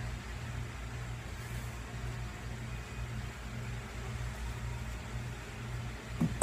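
Steady low electrical-type hum with an even hiss: background room noise.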